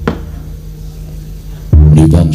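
Javanese gamelan accompanying a wayang kulit play: a deep gong-like strike dies away slowly, a sharp knock sounds just at the start, and another loud low strike with higher ringing notes comes in near the end.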